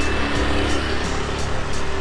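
Background music with a small motor scooter's engine running as it rides past.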